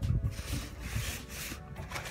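Cardboard box and foam packaging rubbing and scraping while the contents are handled and pulled out.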